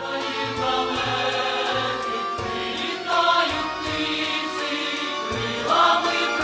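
Choral music: a choir singing over a steady beat with light percussion ticking about three times a second, starting abruptly.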